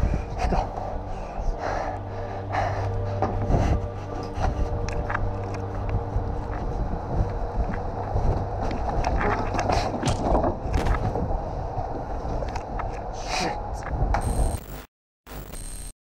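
Footsteps and heavy breathing of a person running, with many short knocks over a steady low hum; the sound cuts out about a second before the end.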